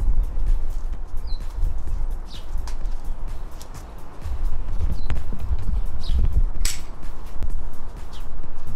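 Wind buffeting the microphone outdoors, a low uneven rumble that swells and fades, with a few short faint bird chirps.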